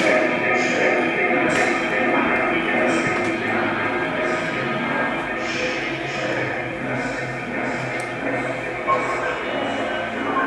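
Voices mixed with music, played back through the loudspeakers of an art installation.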